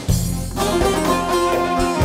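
Instrumental passage of a Turkish folk song with no singing. An arranged band plays over a steady bass line, and a new melody line comes in about half a second in.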